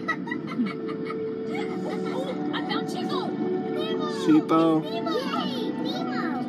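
The submarine ride's show soundtrack: character voices and music with gliding, whistle-like sound effects over a steady hum. A brief loud pitched call comes a little past four seconds in.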